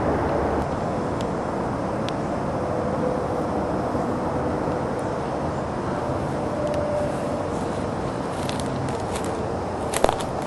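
Steady outdoor rumble of distant road traffic, with a few light crunching steps on rocks and leaves near the end.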